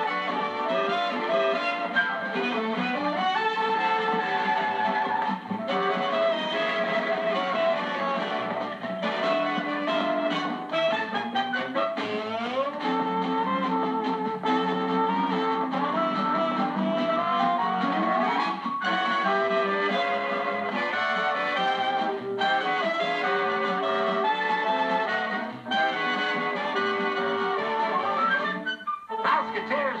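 Lively instrumental show-tune music from a studio band, with no singing, breaking off briefly about a second before the end.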